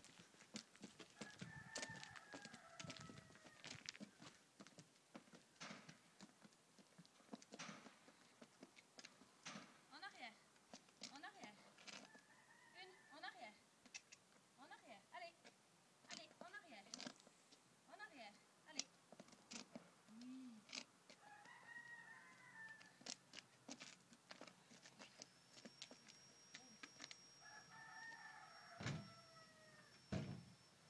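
Faint rooster crowing four times, each call a long arching note. Scattered light clicks between the calls fit a horse's hooves on asphalt.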